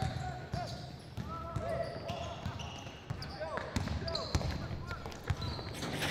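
Background chatter of several people, with scattered single thuds of basketballs bouncing on a hard floor.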